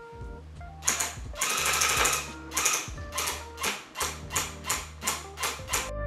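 Electric tufting gun in cut-pile mode running as it punches yarn into the tufting cloth, a low motor buzz in short runs that stop and start, with background music over it. It is smooth and "not too loud".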